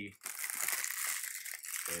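Fresh cellophane wrapper crinkling as it is pulled off a perfume box, a dense, busy rustle from just after the start.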